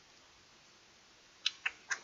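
Three quick, sharp computer mouse clicks, about a fifth of a second apart, near the end, over faint room tone.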